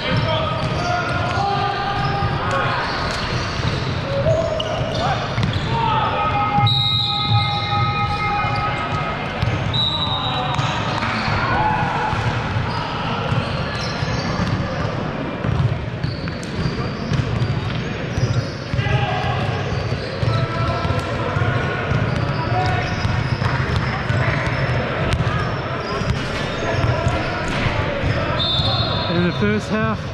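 Basketball game sounds in a large gym: a ball bouncing on the hardwood court with repeated short thuds, over a steady background of players' and onlookers' voices calling out.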